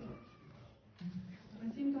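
A short pause in speech, then a woman's voice making a brief hum and an "mm-hmm" near the end, through the microphone in a reverberant hall.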